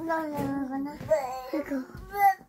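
A young child singing a wordless, drawn-out tune in two phrases, each about a second long.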